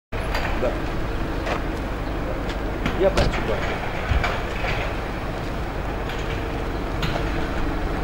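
Crane lorry's engine running steadily as it powers a Palfinger knuckle-boom crane, a low rumble with a faint hum, broken by a few short knocks and clanks.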